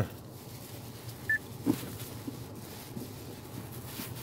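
Paper napkin wiping excess castor oil off a leather gear-knob: faint rubbing, with a couple of soft knocks between one and two seconds in and a brief high squeak just after the first.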